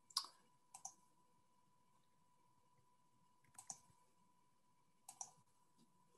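Near silence broken by four faint computer mouse clicks, most of them quick doubles, spread over a few seconds. A faint steady high tone sits underneath.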